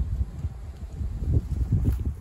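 Low wind rumble on the microphone, with a few soft footsteps on dry grass and fallen leaves, about 1.3 and 1.75 s in.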